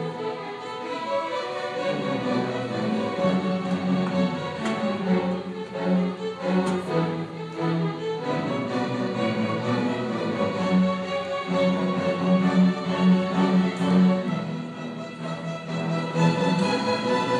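A seventh-grade student string orchestra playing, violins carrying the melody in long held notes over a sustained lower line that shifts pitch every second or two.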